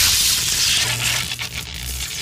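Sound effect of an animated logo intro: a loud, noisy crackling rush over a low rumble, slowly fading.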